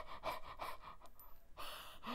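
Faint breathing in a pause between speech, ending with an audible intake of breath.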